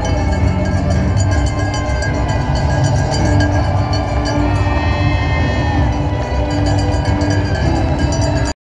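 Music over loudspeakers, slow held notes changing about once a second, over a steady rumble of crowd noise with a fast, fine clicking or jingling.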